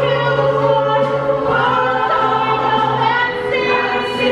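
A large mixed chorus singing a show tune, holding long notes.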